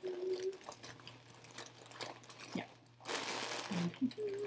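A clear plastic bag crinkling and dry Spanish moss rustling as a handful is pulled from the bag, with a louder burst of crinkling and crunching about three seconds in.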